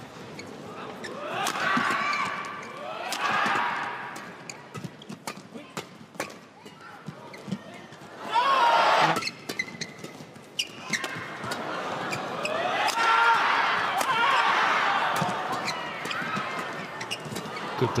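Men's doubles badminton rally: repeated sharp racket hits on the shuttlecock and shoe squeaks on the court, with crowd noise swelling in the second half of the rally.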